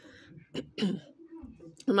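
A woman clearing her throat once, briefly, about half a second in.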